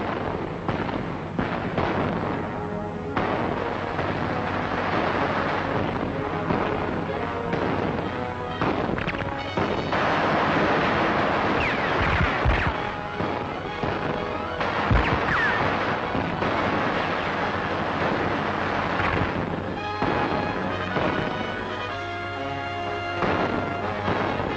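A 1940s war-film battle soundtrack: dense, continuous gunfire and explosions mixed with the film's music score. The music comes through more clearly near the end.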